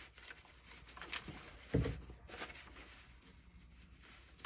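Faint rubbing of a cloth pressed and worked by hand over hot plastic wrapped around a canvas edge, with one soft thump a little before halfway.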